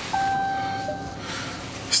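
A single steady high beep lasting about a second, over a soft hiss.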